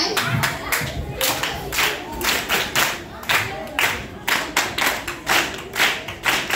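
A large group of children clapping together in a steady rhythm, about three claps a second, with voices faintly underneath.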